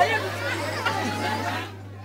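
Indistinct chatter of several people talking at once, over a steady low hum.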